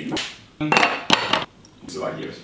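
Coffee being made in a plastic AeroPress: the paddle stirs in the brewing chamber and the brewer is set on a ceramic mug, giving knocks and clinks, with a sharp knock about a second in.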